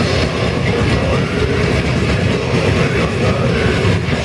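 A death metal band playing live as one continuous wall of sound: heavily distorted guitar and bass over fast, dense drumming, with no separate notes standing out.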